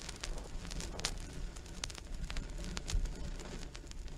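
Surface noise of an old vinyl LP playing in the groove between tracks: scattered clicks and pops over a steady low rumble, with no music yet.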